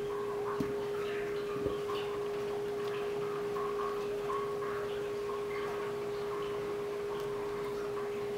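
A steady, unbroken humming tone, with fainter short higher tones coming and going and two light knocks in the first two seconds.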